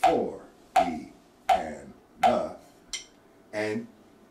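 Drumsticks striking a rubber practice pad in an even beat, four strokes about three-quarters of a second apart, each stroke with a short vocalised count syllable, then a lighter tap near the end.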